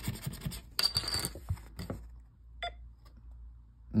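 Paper scratch-off lottery tickets rustling and scraping as they are handled on a table for about the first two seconds, then a brief electronic beep from a lottery ticket scanner as a ticket is checked.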